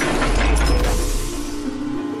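A transition sound effect over background music: a rush of noise with a deep rumble and fast mechanical clicking, which swells in the first half-second and fades out after about a second and a half.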